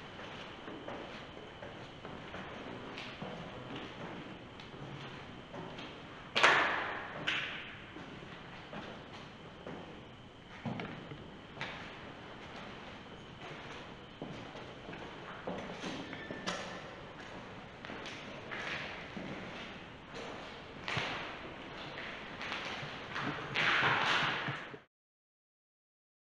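Footsteps going down a stairwell and along a hard-floored corridor, with scattered knocks and thuds. The loudest thud comes about six seconds in, and another cluster of knocks near the end.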